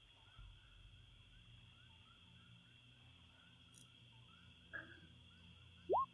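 Faint ambient background soundscape: a low steady hum under soft, repeated small chirps. About a second before the end, a short tone rises sharply in pitch.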